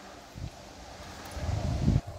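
Wind buffeting the microphone: a low rumble with a brief swell about half a second in, then building up over the last second or so.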